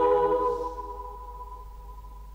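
A choir holding a sustained chord that fades away about a second in, leaving a faint lingering tone.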